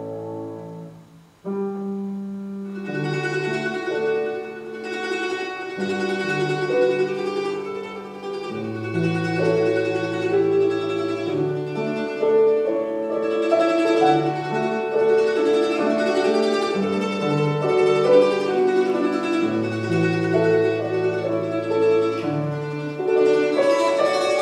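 A 10-string mandoloncello (liuto moderno) playing a plucked melody with piano accompaniment. A held chord dies away in the first second, and the mandoloncello and piano come back in about a second and a half in and carry on continuously.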